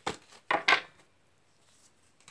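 Oracle cards being shuffled, with cards dropping out of the deck onto a glass tabletop: a click at the start, then two short clattering sounds about half a second in.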